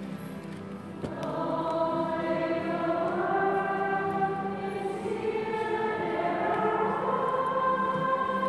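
Choir singing a hymn, with long held notes; the singing swells about a second in.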